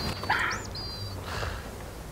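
A few short, high bird chirps in the first second or so, over a low steady hum, with a couple of brief soft puffs of noise.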